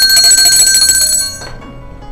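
A bell ringing with a rapid, continuous trill of clapper strikes, a bright metallic ring that fades out about one and a half seconds in.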